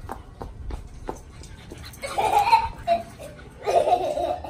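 A small child laughing in short bursts, once about halfway through and again near the end, after a quieter stretch with a few faint clicks.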